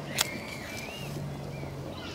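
A match struck on its box: one short scrape just after the start.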